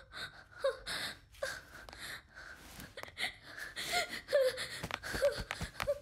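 A woman gasping and whimpering in fright after a fall, a string of short breathy sounds repeated several times.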